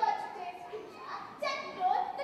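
Young girls' voices speaking.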